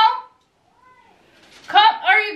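A woman's voice calling out in a high, drawn-out tone: the end of a call of "Mom" dies away, then after a short hush a new high, sing-song call begins near the end.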